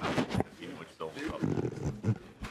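Indistinct voices chattering in a large hearing room, with a loud, rough noise burst in the first half-second.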